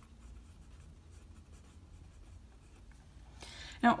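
Pen writing on lined notebook paper: a faint, intermittent scratching of the tip as a word is written.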